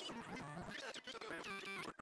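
A quiet gap between two songs of background music: the previous track has faded almost away, leaving faint, scattered fragments of sound.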